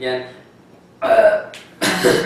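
A young man's voice: a short pitched vocal noise, burp-like, about a second in, after a brief pause, then the start of talk or laughter near the end.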